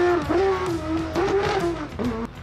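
Porsche 911 race car's flat-six engine revving hard through a bend, its pitch climbing and falling twice with throttle changes, then fading near the end as the car draws away.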